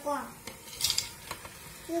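Frozen peas scraped off a plate with a spatula, dropping into a pressure cooker: a brief scraping patter about a second in, then a single click.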